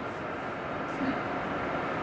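Steady background noise, an even rumble and hiss with a faint hum and no sudden events.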